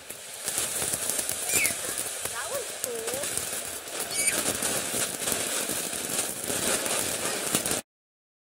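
Ground fountain firework spraying sparks with a steady crackling hiss, a voice calling out briefly over it a couple of times. The hiss cuts off suddenly near the end.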